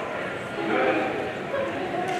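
A person's voice calling out briefly, starting about half a second in, with another short call near the end.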